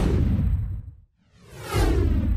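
Two whoosh sound effects accompanying an animated title card. The first swells at the start and dies away within a second. The second builds from about halfway and peaks near the end, with a deep rumble under each.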